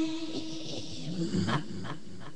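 A long sung note trails off within the first second, followed by a low, wavering, rough voice sound with a couple of clicks in the second half.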